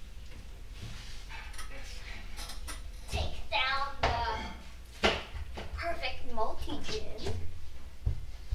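A child speaking indistinctly, in short bits, with a few light knocks in between, one sharper knock about five seconds in.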